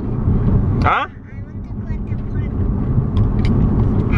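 Steady low rumble of a car's road and engine noise inside the cabin while driving, with a brief vocal sound about a second in.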